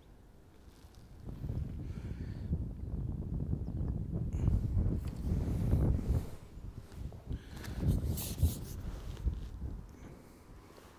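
Wind buffeting the microphone: a gusty rumble that builds about a second in and eases off near the end.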